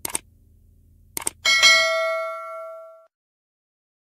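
Subscribe-button animation sound effect: a mouse click, then a quick double click and a bright bell-like notification ding that rings out for about a second and a half.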